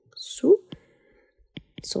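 A narrator's voice: a short breathy, whispered sound running into one brief syllable, then a few small mouth clicks and a pause before talk resumes near the end.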